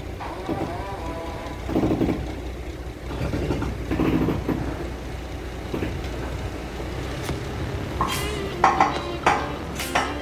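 Heavy-haul tractor-trailer carrying a large excavator rolling slowly over a steel bridge: a steady low rumble with irregular metallic clanks and rattles, the sharpest ringing knocks coming in a cluster near the end.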